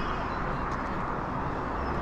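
Steady outdoor street noise, mainly a distant traffic hum with a low rumble, with no single distinct event.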